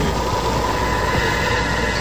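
Steady low rumbling drone with a thin high tone that a second, higher tone joins near the end: the background sound bed of an old AM radio broadcast, filling the pause between spoken lines.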